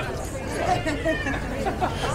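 Chatter of passers-by on a busy pedestrian street, several voices mixed together.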